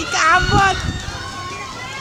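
Several voices shouting and calling over one another, loudest in the first second, then fainter overlapping chatter.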